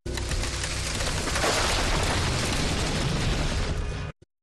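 Sound effect for an animated logo sting: a dense rushing noise over a low rumble. It swells to its loudest about one and a half seconds in, holds, then cuts off abruptly at the end.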